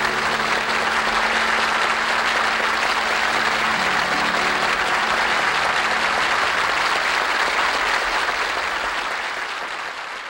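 Live concert audience applauding at the end of the song, with the accompaniment's last held low notes dying away under the clapping in the first few seconds. The applause begins to fade out near the end.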